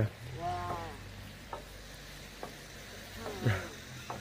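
Steady outdoor hiss with a short voiced sound from a person near the start and another about three and a half seconds in, and two faint ticks in between.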